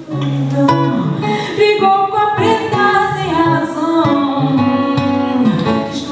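A woman singing while accompanying herself on acoustic guitar in a live solo performance, the guitar and voice coming back in strongly right at the start after a brief quiet moment.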